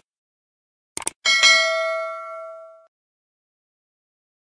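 Two quick mouse clicks about a second in, followed by a bell ding that rings out and fades over about a second and a half. This is the click-and-bell sound effect of a subscribe-button and notification-bell animation.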